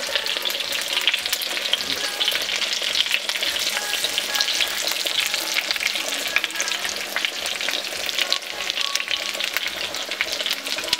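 Breaded ground-meat patties and sliced onions sizzling in hot oil in a nonstick frying pan, a steady dense crackle, with a wooden spatula scraping and pushing the patties about.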